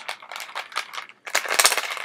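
Ice cubes rattling and clinking inside a metal cocktail shaker holding a martini, as a run of sharp clicks that thickens into a dense clatter about a second and a half in.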